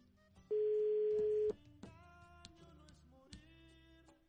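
Telephone ringback tone on an unanswered call: one steady, loud one-second beep about half a second in, heard over a quiet background music bed with plucked notes.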